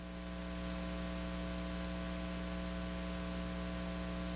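Steady electrical mains hum with a layer of hiss from the microphone and sound system, unchanging apart from a slight rise in level in the first second.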